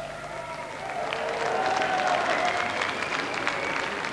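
Concert audience applauding, with a few voices calling out; the clapping swells about a second and a half in.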